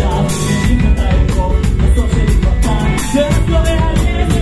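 Live rock band playing loud: drum kit with quick, steady cymbal hits under bass and electric guitar, and a male singer's voice over the top.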